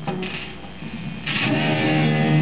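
Fender Lonestar Stratocaster electric guitar played through a Marshall amp with a distorted metal tone: a chord struck at the start, then a louder chord strummed about a second and a half in and left ringing.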